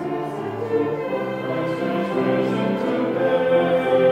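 Small mixed choir of men's and women's voices singing in harmony, holding sustained notes, swelling louder toward the end.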